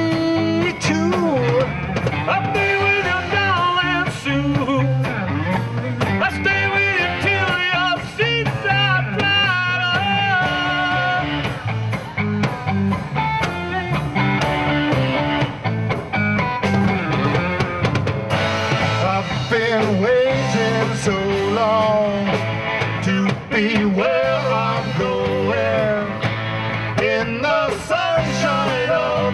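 Live rock band playing: electric guitar, bass and drums, with a lead line bending up and down in pitch over a steady beat.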